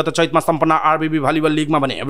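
Speech only: a narrator reading the news, talking continuously.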